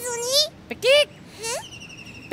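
A high-pitched puppet voice making short wordless sounds, three quick calls that rise and fall in pitch. Near the end a faint, steady high tone with a slight wobble comes in.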